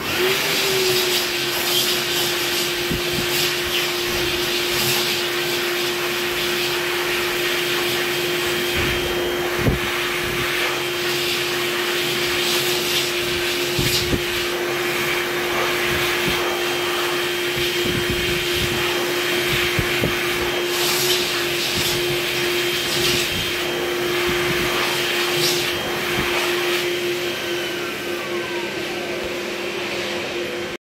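Velair Pebble hand dryer running: it starts suddenly with a brief rising motor whine, then holds a steady rush of air over a constant motor tone.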